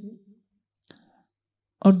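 A man's voice speaking Hindi trails off, then a pause of near silence broken only by one faint click, and the voice starts again near the end.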